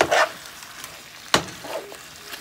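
A metal spoon stirring curry chicken pieces in a frying pan over a low, steady sizzle. There is a scrape at the start and a sharp clack of the spoon against the pan a little past halfway.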